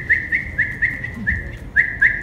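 A person whistling a quick run of short, high chirps, about four a second, each sliding up and then held briefly, to catch a puppy's attention.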